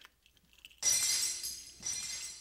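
Glass shattering, the costume jewellery shown to be only glass: a sudden crash about a second in, with ringing fragments dying away, then a second crash near the end.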